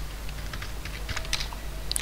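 A few scattered, irregular clicks of computer keyboard keys being pressed.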